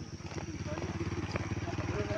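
Small motorcycle engine running as it rides by close at hand, its pulsing note growing steadily louder.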